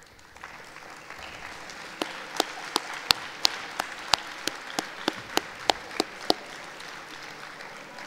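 Audience applauding. One person claps sharply close to the microphone at an even pace of about three claps a second through the middle of it, and the applause tails off near the end.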